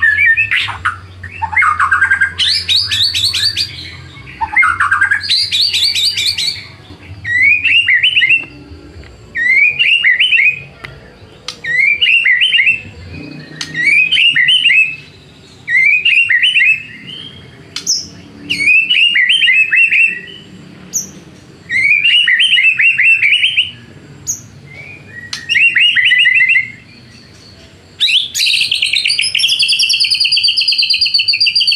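White-rumped shama (murai batu) singing: varied whistled phrases and rapid rattling trills at first, then a run of short rising whistled phrases repeated about every second and a half, ending with a long rapid rattling trill near the end.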